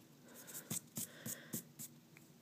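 Pencil sketching on paper: soft scratching, then about five short, quick strokes in the second half.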